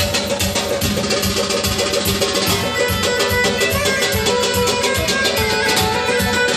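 Live band music: a Korg electronic keyboard playing a fast melody over a steady hand-drum beat.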